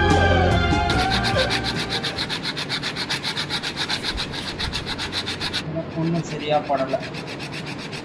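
Brief music that ends about a second in, then an autopsy knife scraping the temporalis muscle and fascia off the skull in quick, even strokes. The scraping turns duller and quieter after about five and a half seconds.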